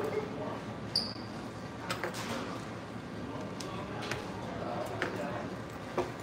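Restaurant dining-room background: faint distant voices with occasional clicks and knocks, and a brief high beep about a second in.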